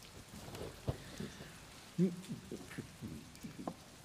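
Rain falling: a soft steady hiss with scattered drop-like ticks. A man's short 'mm' is heard about two seconds in.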